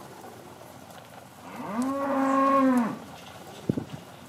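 A black baldy heifer mooing once, a call of about a second and a half that rises, holds, then falls away. A couple of sharp knocks follow near the end.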